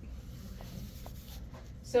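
Soft scratching of a pen writing on paper over a low steady room hum, with a couple of faint ticks.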